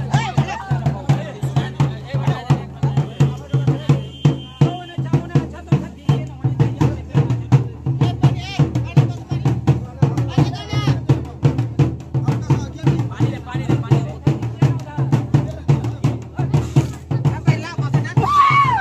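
Fast, steady drumming, about four beats a second, with voices and chatter over it.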